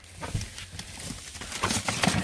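Irregular light knocks and rustling of boxed goods and packaging being handled and shifted while digging through a pallet box.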